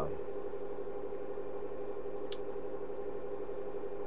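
A steady mechanical hum made of several fixed tones, with one faint tick a little past the middle.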